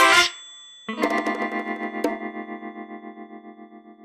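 The theme song's last sung bars cut off just after the start. After a short gap, a single distorted electric-guitar chord rings out with a fast pulsing tremolo, about six pulses a second, and slowly fades away.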